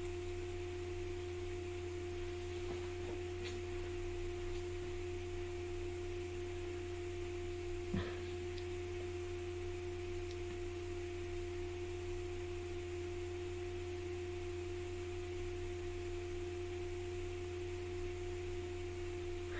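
Steady electrical hum with a clear, unchanging tone, and a single faint tap about eight seconds in.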